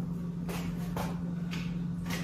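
Soft handling noises of a paper word card being put up on a chalkboard: a light shuffle and a few faint taps about half a second apart, over a steady low hum.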